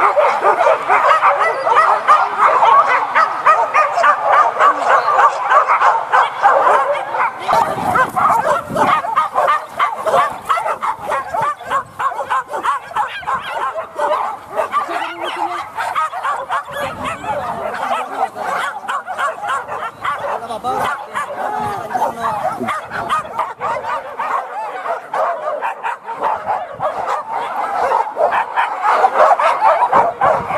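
A pack of leashed hunting dogs barking together without pause, worked up during a wild boar hunt.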